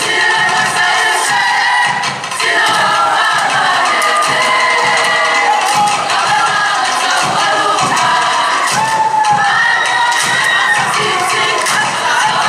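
A group singing a Samoan siva song together, with a steady beat of claps, over cheering and shouts from the crowd.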